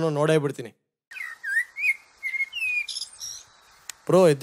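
Birds chirping: a string of short high calls gliding up and down over a faint hiss, starting about a second in after a brief snatch of a man's voice.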